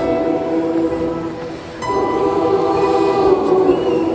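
Large choir singing long held chords with band accompaniment on keyboard, guitar and drums. The sound dips briefly just before two seconds in, then a new chord comes in.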